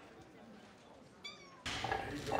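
A kitten gives one short, high, faint mew about a second in. Near the end, louder background noise starts abruptly.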